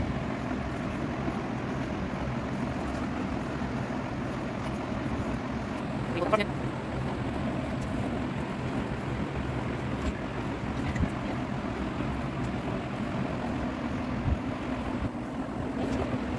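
A steady background hum and hiss, with a brief faint voice about six seconds in.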